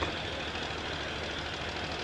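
Steady low hum and hiss of background noise, with no distinct events.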